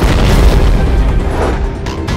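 A sudden deep boom, then a low rumble of rocks falling, a dubbed rockfall sound effect that is loudest about half a second in. It plays over dramatic background music.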